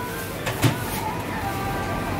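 Steady convenience-store background hum with a few faint held tones, and a short click or two about half a second in.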